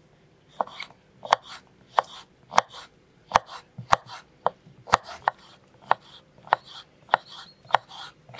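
Kitchen knife slicing a long red pepper into rings on a wooden cutting board: a steady series of crisp cuts, each ending in a knock of the blade on the board, about three every two seconds.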